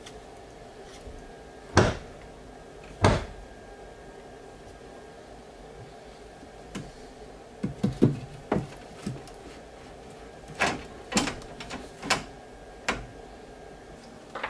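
PVC vent pipe and elbow fittings being handled and pushed together, giving a series of sharp plastic knocks and clunks: two loud ones in the first few seconds, a quick cluster about halfway, and several more near the end.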